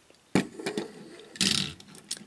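Handling noise from die-cast toy cars being set down and picked up on a table: a sharp click about a third of a second in, light rustling, then a louder brushing scrape about a second and a half in.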